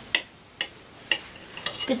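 Knife clicking against a ceramic plate while slicing a soft-boiled egg: four light, sharp clicks about half a second apart.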